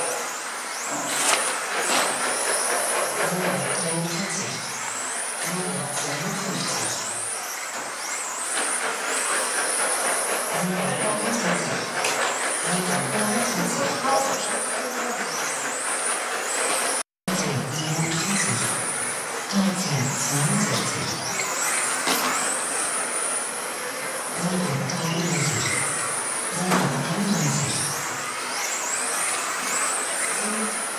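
Electric 1/10 touring cars (Tamiya TRF419X and Awesomatix A800) with 17.5-turn brushless motors racing on a carpet track. The motors and drivetrains give a high whine that rises in pitch every couple of seconds as the cars accelerate out of corners, over a steady noise of tyres and running gear.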